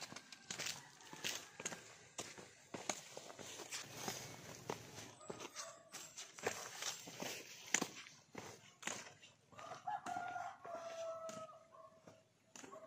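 Hikers' footsteps and trekking-pole taps on a dirt trail, a run of irregular crunches and clicks. Near the end a rooster crows once, a drawn-out call of about two seconds.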